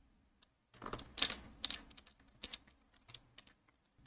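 Faint clicks of a computer keyboard and mouse, a cluster of them about a second in and a few scattered clicks later.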